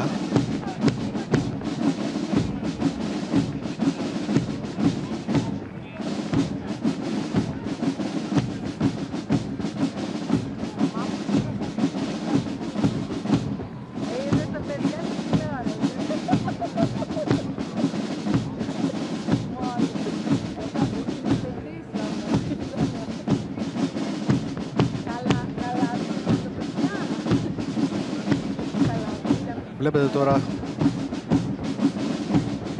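Marching drums of a military parade playing a steady march cadence, with snare and bass drum beats, the pattern pausing briefly about every eight seconds.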